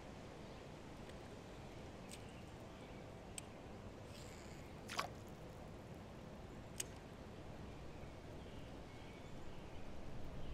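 Faint steady background noise with a few short, sharp clicks, the loudest about five seconds in.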